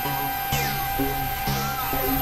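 Experimental electronic synthesizer music: short low notes repeating about twice a second over a steady held tone. Two high falling sweeps swoop down, about half a second and a second and a half in.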